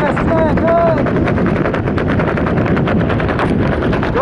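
Wind buffeting the helmet-camera microphone under an open parachute canopy: a loud, rough rush full of rapid, irregular pops.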